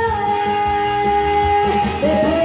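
Female singer singing into a microphone, holding one long note, over amplified backing music with a steady bass beat.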